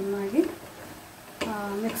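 A woman speaking in two short stretches, with a quieter gap of about a second between them.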